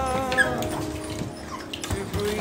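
Young goldendoodle puppies giving a few brief high cries, over background music whose held notes fade out in the first half second.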